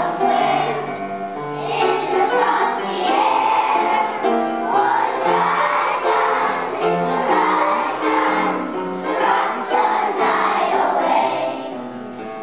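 A choir of kindergarten children singing a song together.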